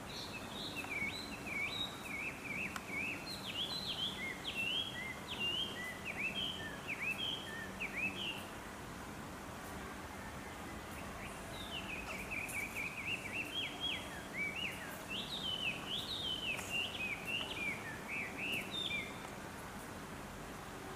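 A songbird singing two long bouts of rapid, varied high chirping notes, the second starting about halfway through, over a faint steady hum.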